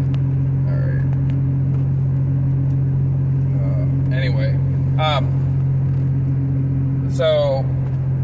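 Steady low engine and road drone heard inside a vehicle's cab. A few brief vocal sounds come partway through and again near the end.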